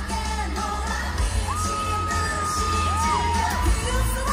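K-pop girl group song performed live through a concert PA: female vocals over a pop backing track with heavy bass. A singer holds one long high note for about a second and a half near the middle, then sings a shorter note that rises and falls.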